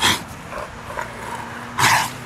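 A dog at play giving two short, rough huffs, one at the start and one near the end.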